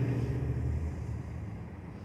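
A vehicle engine running nearby, a low rumble that slowly fades away.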